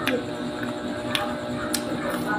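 Faint steady background music with a few light, sharp clicks of a metal spoon against a ceramic mug.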